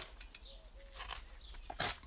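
Faint handling noises, light rustles and clicks, with a short louder rustle near the end as a bamboo cane is brought up beside the leek. Faint bird calls sound in the background.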